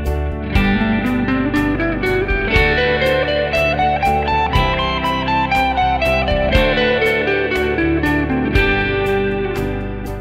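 Electric guitar playing G major scale runs in a three-notes-per-string pattern, climbing and falling note by note. Underneath is a backing track with a steady beat and chords that change about every two seconds.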